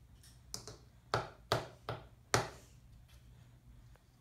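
A green plastic toddler's utensil knocking and tapping against a bowl, about five sharp taps in the first two and a half seconds.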